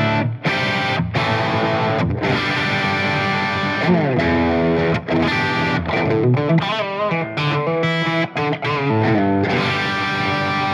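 PRS CE24 electric guitar with a bolt-on maple neck, on its bridge humbucker at full volume and full tone, played through a Marshall JCM800 2203 head with a little reverb: overdriven chords ringing out with a few short breaks, then quicker single-note lines with slides, bends and vibrato in the second half.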